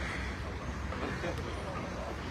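Steady low rumble of car engines on the street, with faint voices in the background.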